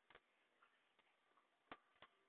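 Near silence: room tone with a few faint, isolated clicks, the clearest about three-quarters of the way through.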